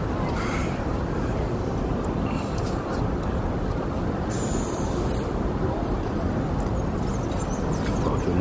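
Steady city street background: a low traffic rumble with distant voices.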